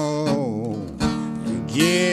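Acoustic country blues on bottleneck slide guitar: held notes that bend and glide in pitch over a steady low bass note, with a break about a second in and a new sliding note near the end.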